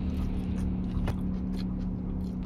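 A mouthful of food being chewed, with a few faint clicks, over the steady low hum of a running car.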